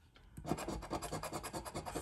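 Metal scratcher coin scraping the latex coating off a paper scratch-off lottery ticket in rapid back-and-forth strokes, starting about half a second in.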